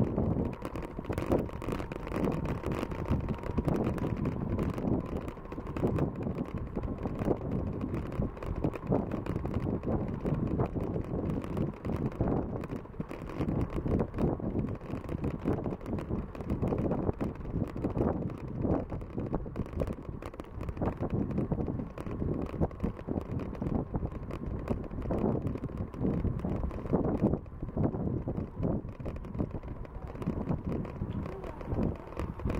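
Wind buffeting the microphone of a camera carried on a moving bicycle: a continuous, gusty low rumble that rises and falls, with the rolling noise of the ride underneath.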